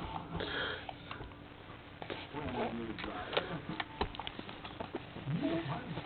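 A young baby making faint, brief vocal sounds and sniffs, with a few small clicks, in reaction to the taste of peach puree.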